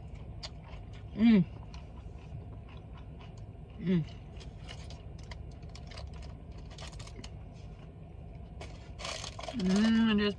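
Close-up eating sounds of a fried egg roll being chewed: small crunches and mouth clicks, with a hummed "mmm" about a second in and a shorter one near four seconds. A brief rustle comes near the end.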